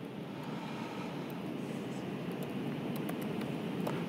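Steady room hum with faint, scattered laptop keyboard clicks as someone types.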